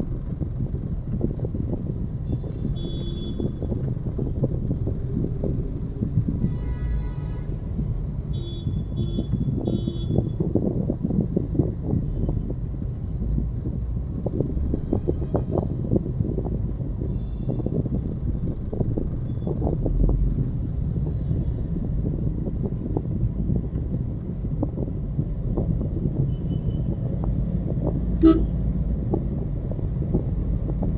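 Steady low rumble of a car's engine and tyres heard from inside the cabin while crawling in dense traffic. Other vehicles' horns give short high toots a few seconds in and several more around ten seconds, with a lower horn blast in between, and a single sharp sound comes near the end.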